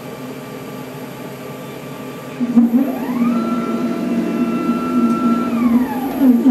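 CAMaster CNC router running with its router motor humming steadily while the bit cuts into the MDF spoilboard. About halfway through, the gantry's drive motors set off with a whine that rises in pitch, holds steady, then falls near the end as the machine slows.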